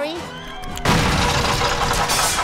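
Cartoon sound effect of a snail's built-in engine blowing apart: a sudden loud blast a little under a second in, then continued crackling and rattling.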